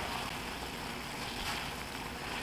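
Water boiling in a stainless steel saucepan: a steady, even bubbling.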